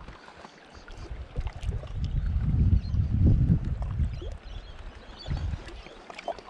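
Wind buffeting the microphone in an irregular low rumble that swells through the middle and dies down near the end, over small waves lapping against a rocky shoreline.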